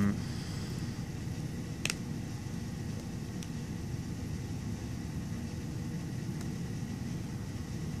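Steady low background rumble, with one sharp click about two seconds in.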